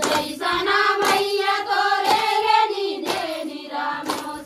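A group of women singing a Chhattisgarhi Suwa folk song in unison, with hand claps about once a second keeping the dance rhythm.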